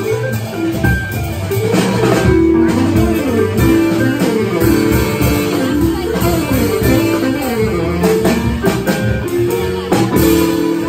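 Live small-group jazz on saxophone, upright bass, drum kit and electric keyboard, with fast running melodic lines over a walking low line and drums.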